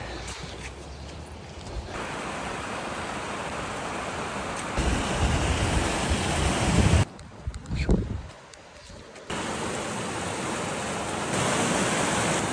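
Steady outdoor rushing noise of wind on the microphone and fast-running mountain stream water, changing abruptly several times as the clips cut, with a quieter stretch about seven to nine seconds in.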